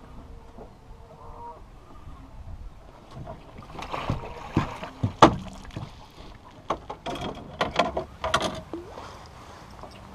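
A hooked fish being netted and brought into a boat: faint water sounds at first, then splashing and a run of sharp knocks and clatters as the net and thrashing fish come aboard, the loudest knock about five seconds in.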